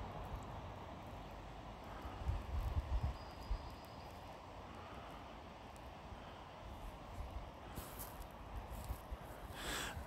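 Quiet outdoor ambience: a faint steady hiss with irregular low rumbles and a few soft bumps, and a brief rustle near the end.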